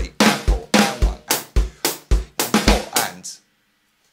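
Electronic drum kit played with sticks in a steady rock beat: a bass drum on every beat, about two a second, under snare and hi-hat strokes. It stops abruptly a little over three seconds in.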